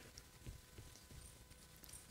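Near silence: room tone in a pause between spoken sentences, with a few faint low knocks.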